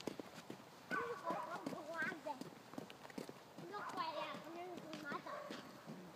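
Faint, high-pitched voices talking in two short stretches, like children's voices, over light clicking footsteps of people walking.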